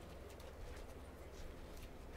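Quiet outdoor ambience: a steady low rumble with a few faint ticks.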